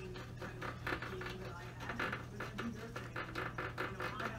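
Faint background speech with a steady low hum underneath.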